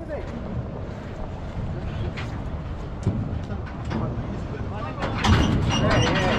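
Wind buffeting the microphone with a steady low rumble, under indistinct voices that grow louder near the end.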